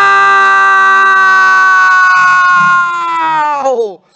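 Football commentator's long, held goal shout: one loud sustained note at a steady pitch that sags and falls away just before the end.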